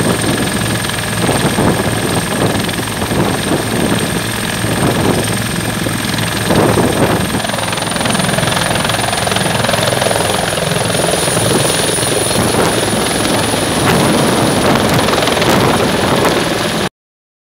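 Fire-brigade rescue helicopter running close by, with a continuous rotor chop and a high turbine whine. The whine steps up in pitch about halfway through as it powers up and lifts off.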